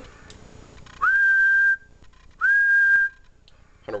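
A man whistling two steady high notes, each under a second long and starting with a quick upward slide, into the microphone of an Icom IC-7000 transceiver. The whistle stands in for a tone generator, giving the upper-sideband transmitter a signal so that its power output can be read.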